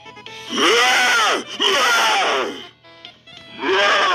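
A young man's long, drawn-out yelling laughs, twice in a row with a third starting near the end, each rising and falling in pitch, over faint background music.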